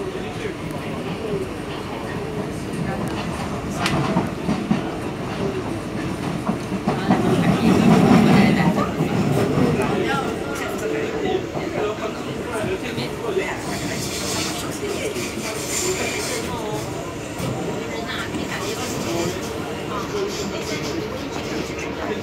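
Inside an SMRT C151B train car running on elevated track: steady rumble of wheels on rail, with scattered clicks and knocks. The rumble swells loudest about eight seconds in, likely as the train rides over the track crossing at the points.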